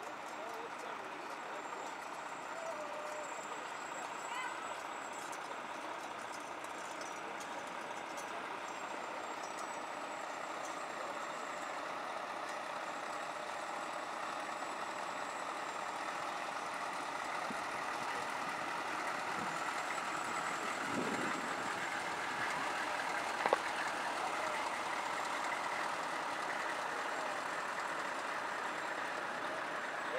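Parade vehicles rolling slowly past at low speed, led by a Chevrolet van-bus whose engine grows louder as it draws close past the middle, with faint crowd chatter behind. A single sharp click sounds about two-thirds of the way through.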